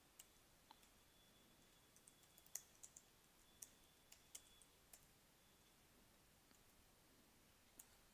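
Faint, scattered keystroke clicks from a computer keyboard being typed on, in short irregular runs.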